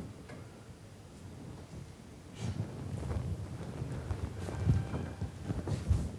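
Quiet room tone, then from about two seconds in a run of soft, low, uneven thumps and rustling that grows louder towards the end.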